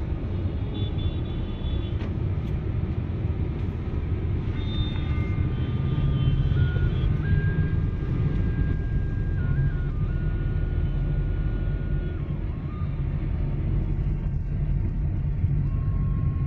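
Steady low engine and road rumble heard from inside a car's cabin while driving in traffic. Through the middle, faint thin high tones hold and then step to new pitches.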